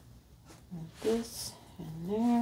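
A woman's voice over quiet room tone: a short murmur with a breathy hiss about a second in, and another vocal sound starting right at the end.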